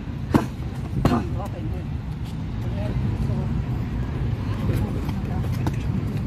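Two sharp smacks of strikes landing on padded focus mitts, the second coming under a second after the first, over a steady low rumble of road traffic.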